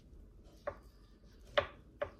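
Kitchen knife knocking twice on a plastic cutting board while filleting a raw mackerel, the second knock louder.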